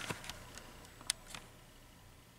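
Faint steady low hum from the ballast of a two-tube T12 rapid-start fluorescent fixture, which the owner suspects is magnetic. A few small clicks sound over it, the sharpest about a second in.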